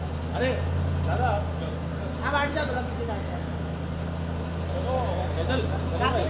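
A steady low hum of an idling car engine, with scattered voices of a small crowd over it.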